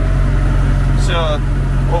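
Tractor's diesel engine idling steadily, heard from inside the cab, a low even hum.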